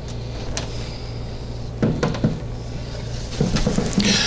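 Light knocks and clicks from handling a food dehydrator and its trays: a few separate knocks, then a quick cluster near the end, over a steady low hum.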